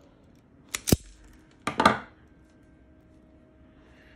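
Self-adjusting wire stripper (Klein Katapult) squeezed twice on 12-gauge wire, stripping the insulation off the conductor ends: each stroke is a quick cluster of sharp snaps, the two about a second apart.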